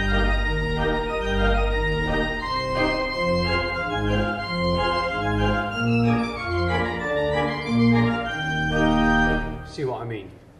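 Two-hundred-year-old Bishop & Son village pipe organ played with the tremulant drawn, which makes the whole organ waver with a vibrato. The tune has a steady, bouncing bass line and a run in the upper part that falls and rises about two-thirds of the way in. The playing stops just before the end.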